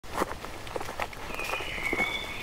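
Footsteps on a dirt forest path strewn with leaves, about four steps, with a steady high whistling tone coming in a little past halfway.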